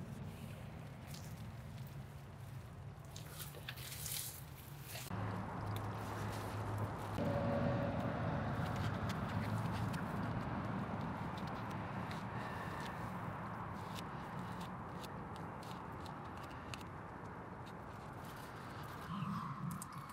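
Dry reed stems rustling and small clicks and taps as fishing tackle is handled at close range, over a steady outdoor background hiss that gets louder about five seconds in.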